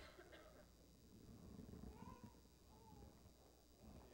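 Near silence: room tone, with two faint, short high-pitched sounds about two and three seconds in.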